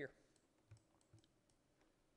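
A few faint, scattered clicks from a computer mouse, over near-silent room tone.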